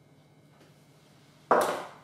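A small spirit level set down on a table with a single sharp knock about one and a half seconds in, ringing briefly. Before it, only quiet room tone with a faint hum.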